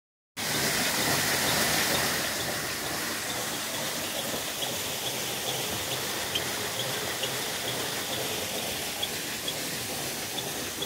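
Water rushing and splashing beneath a water-powered stone mill, driving its wheel; a steady gush, a little louder in the first two seconds. Faint light ticks come every half second or so.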